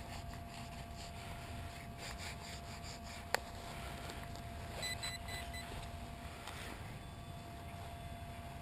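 Digging knife scraping and cutting into frozen turf and soil, with a faint steady hum underneath. There is one sharp click a little past three seconds in, and a short run of quick electronic beeps around five seconds in.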